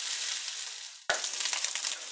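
Pork balls sizzling in a hot frying pan. The sizzle fades away toward the middle, then cuts back in abruptly with sharper crackling and spitting.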